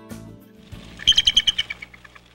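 A bird's call, a quick run of high-pitched chirps repeated about ten times a second, starting about halfway through and fading out.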